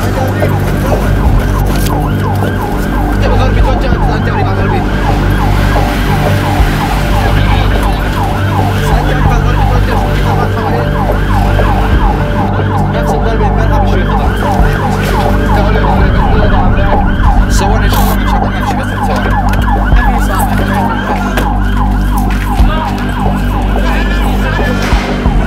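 Ambulance siren wailing in rapid rising-and-falling sweeps, heard from inside the moving ambulance over the steady drone of its engine; the siren grows fainter near the end.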